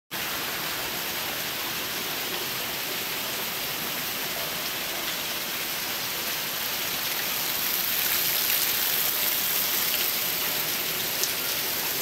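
Heavy rain pouring steadily, a dense even hiss with faint scattered drop ticks, growing a little louder about eight seconds in.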